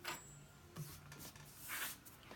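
Faint handling noise of hands working thread and a bobbin at a sewing machine, with a short rustle near the end.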